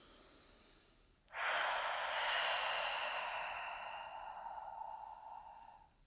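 A long, breathy hiss begins abruptly about a second in and fades slowly over four seconds, ending just before the close.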